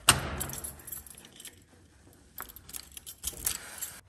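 A bunch of keys jangling as a key is worked in a door lock: a sharp loud clack of the lock right at the start, then quicker rattles and clicks of the keys near the end.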